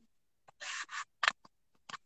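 A few short, soft hissing noises picked up by a video-call microphone: a longer one about half a second in, then two brief ones, the last just before speech resumes.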